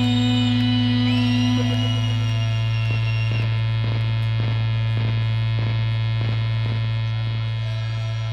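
A loud, steady low electronic hum-drone from the band's instruments and amplification left sounding at the end of a live set, layered with many sustained overtones. A few high tones slide upward about a second in, and a run of faint clicks sounds through the middle.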